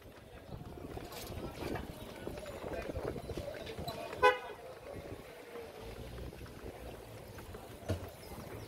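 Busy street ambience of traffic and passing voices, with one short honk of a vehicle horn about four seconds in.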